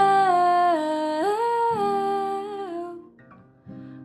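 A woman's voice humming a wordless melody in held notes that step up and down, over acoustic guitar. The voice stops about three seconds in, leaving the guitar softly ringing.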